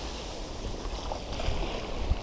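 Shallow sea water washing and sloshing in the surf at the water's edge, with wind rumbling on the microphone.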